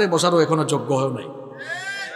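A man speaking into a microphone, breaking off just over a second in. Near the end comes a short high-pitched cry that rises and falls, like a cat's meow.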